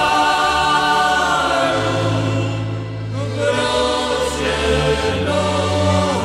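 Choral music: voices singing long held notes that glide slightly, over a low sustained bass that moves to a new note a few times.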